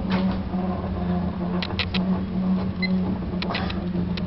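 A steady low electrical hum with a few faint clicks.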